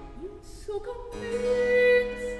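A female singer in classical early-music style, singing a long held note that swells toward the end, over period-instrument accompaniment with harpsichord continuo. A low sustained bass note comes in about a second in.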